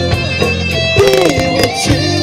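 Live band playing a guitar-led passage over bass and drums, with held notes that bend in pitch.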